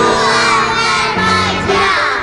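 A group of young girls calling out together in a drawn-out chorus, their voices overlapping.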